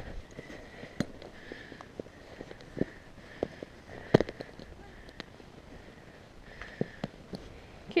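Saddle tack being handled close to the microphone: scattered faint clicks and small knocks from the stirrup iron and stirrup-leather buckle as the leathers are adjusted. The loudest knock comes about four seconds in, over a low steady hiss.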